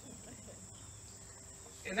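Crickets chirring: a faint, steady high-pitched trill.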